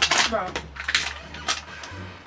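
A thrown object hits and falls with a brief noisy rush, followed by a few sharp clicks and knocks spread over the next second and a half.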